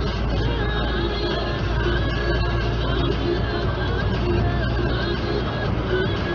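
Music playing on a radio in a vehicle cab, over the steady low rumble of the vehicle on the road.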